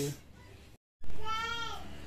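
A short high-pitched vocal cry, rising then falling in pitch, about a second in, after the tail of a man's speech and a brief dropout.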